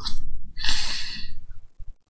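A man's audible breath, a sigh-like exhale lasting about half a second near the middle, with a short breathy hiss just before it and a low rumble underneath.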